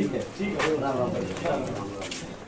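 Several men talking at once, close by and indistinct, in a casual back-and-forth exchange of greetings.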